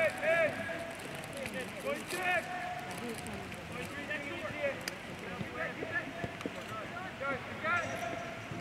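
Several short, distant shouts and calls from voices on and around a soccer field, the loudest near the start and near the end, over steady outdoor background noise.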